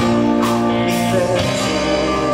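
A live band playing a song: electric guitar and drums, with a male singer holding the microphone to his mouth, in sustained, steady notes.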